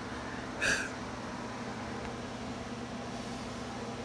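Steady low electrical hum with a faint hiss, and one brief short sound a little under a second in.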